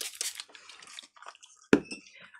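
Faint handling sounds of craft work on a tabletop, with one sharp tap or knock about three-quarters of the way through.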